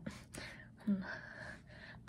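A woman's audible breathing, with a breathy in-breath between phrases and one short spoken word about a second in.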